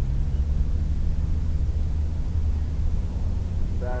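Steady low rumble, with a faint steady hum just above it.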